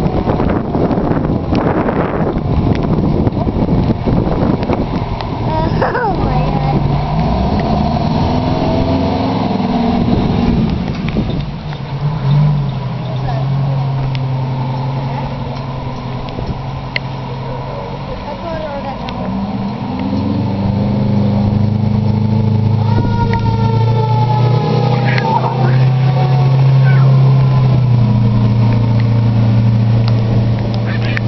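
Fire trucks' diesel engines rumbling as they pull out and drive away, growing steadily louder in the second half. A siren tone glides down in pitch about three quarters of the way through.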